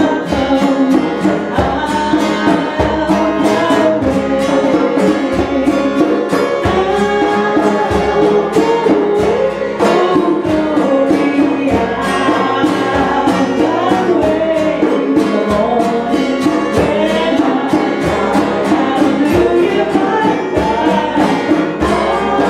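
A small group playing a song live: a woman sings over strummed acoustic guitar and a steady beat.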